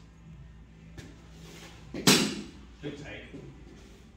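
A softball bat hitting a pitched softball once about halfway through: a single sharp crack that rings briefly, followed by a few fainter knocks, over a steady low hum.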